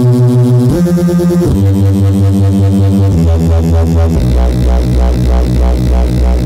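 A Reese bass patch from FL Studio's Sytrus FM and ring-modulation synth, played as a run of held low notes that step to a new pitch several times. A very slow operator shifts the pitch of a layered saw wave against the output, giving each note the regular pulsing Reese movement.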